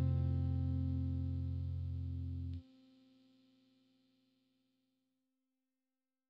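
The song's final chord on a chorus-effected electric guitar, with a deep low end, sustaining and slowly fading. It is cut off abruptly about two and a half seconds in, and one faint note lingers briefly after it.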